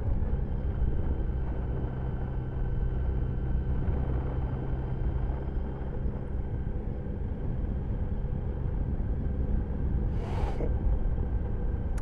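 Motorcycle engine running steadily at cruising speed under wind and road noise, heard from a camera mounted on the bike; a brief hiss about ten seconds in.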